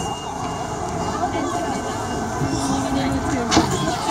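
Steady rushing noise of a firefighter's hose spraying water into a smouldering burn room, with a fire engine running behind it. A single sharp knock comes about three and a half seconds in.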